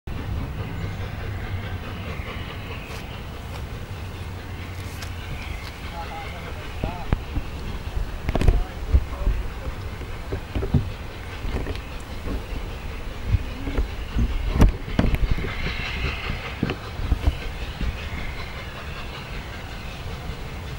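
LNER A4 class 4-6-2 steam locomotive No. 60009 drawing its train slowly in: a steady low rumble, with irregular knocks and clanks from about six seconds in.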